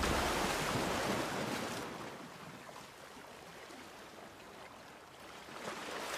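A rushing, surf-like noise from a logo outro sound effect, fading over the first two seconds, then swelling again near the end.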